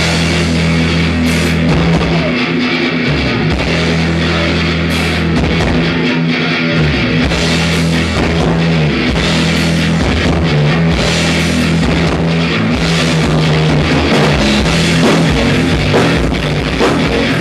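Live crossover thrash band playing an instrumental stretch of a song: electric guitar riffing over bass and a pounding drum kit with crashing cymbals, loud and continuous.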